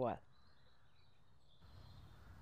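Quiet outdoor ambience with a faint, wavering high bird call, then a faint low rumble coming in near the end.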